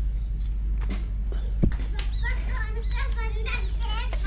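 High-pitched voices, speech-like, in the background from about halfway through, over a steady low hum. A single sharp knock comes shortly before the voices start.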